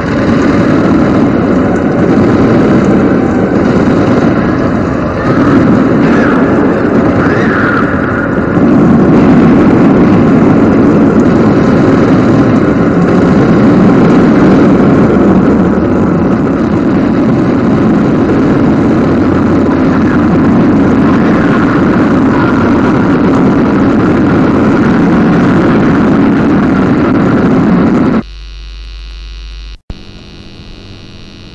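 Dense, steady rumbling noise drone of a lo-fi raw black metal intro piece. About two seconds before the end it cuts off abruptly to a low electrical hum.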